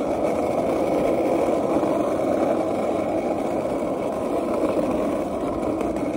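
Steady rushing noise of riding a bicycle at speed: wind over the microphone and tyres rolling on the pavement, with no breaks or knocks.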